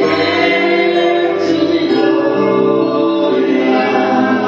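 Worship song sung by a woman into a hand-held microphone, amplified through a loudspeaker, with several voices joining in on long held notes.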